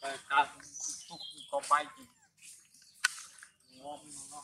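Short bursts of a person's voice, twice in the first two seconds, with faint high chirps in the background and a single sharp click about three seconds in.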